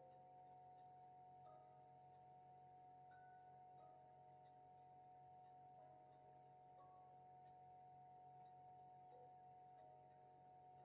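Near silence: a faint steady hum, with a few faint brief tones here and there.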